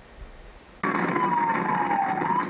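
Electronic siren on an escort motorcycle wailing, its pitch sliding slowly down, over loud wind and road noise from the ride. It cuts in abruptly a little under a second in, after a quiet start.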